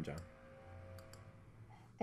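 A few faint clicks at a computer over quiet room tone, with a faint steady tone underneath.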